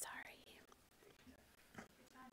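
Faint whispering and breath close to a microphone, with a louder, hissy breath or whispered sound right at the start.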